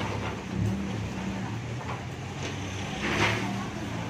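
Car engine running close by in slow street traffic, a steady low hum, with a short louder burst of noise about three seconds in.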